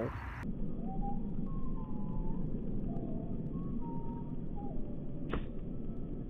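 Wind rumbling on the microphone, then a single sharp crack about five seconds in as a golf club strikes the ball off the tee.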